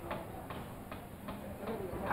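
A quiet lull with a row of faint, soft ticks, about two or three a second.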